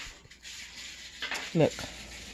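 Soft rustling as a cookie is handled and flipped over in its cardboard box, lasting about a second, followed by a woman saying "look".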